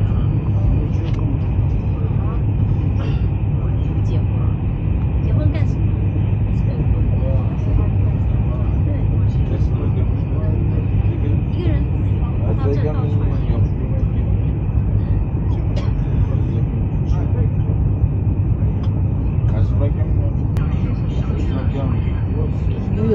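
Steady low rumble inside a high-speed train carriage running at speed, with faint voices of other passengers underneath.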